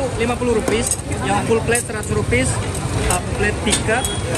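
People talking close by over the steady low rumble of a crowded street, with a few sharp clicks.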